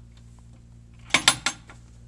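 Metal drawer handles on a wooden chest being flipped up and let fall, clacking against their backplates like a door knocker: three sharp metallic clacks in quick succession about a second in, and one more at the very end.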